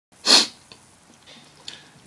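A single short, loud burst of breath noise into the microphone about a quarter second in, followed by faint breathing before speech begins.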